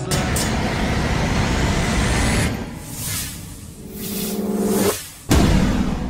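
Logo-reveal sound effects with music: a noisy rising whoosh for the first couple of seconds, a held tone, then a sudden low hit about five seconds in that fades out.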